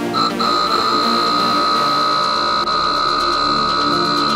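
Small DC diaphragm air pump switching on just after the start and running with a steady high whine while it inflates a soccer ball, over electronic background music.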